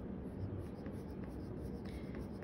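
Colored pencil scratching faintly on paper in short shading strokes, laid on lightly to build a lighter value.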